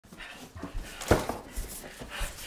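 A person panting and gasping for breath while hauling an armful of boxes up to a doorway, with a loud thump or grunt about a second in.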